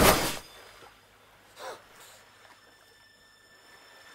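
Sound mix of a fan-film sword-fight scene: a loud hit dies away in the first half-second. Then it is nearly quiet, apart from one short sound falling in pitch about a second and a half in.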